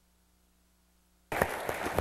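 Near silence, then a little over a second in an audience's applause starts abruptly, a dense patter of many hand claps.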